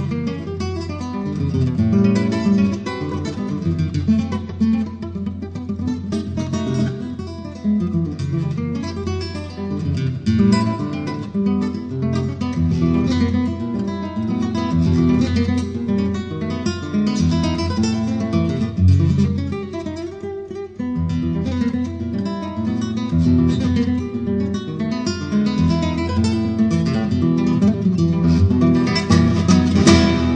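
Solo nylon-string acoustic guitar playing Brazilian music live: quick runs of plucked notes over a moving bass line. There is a brief break about twenty seconds in, and a chord rings out at the very end.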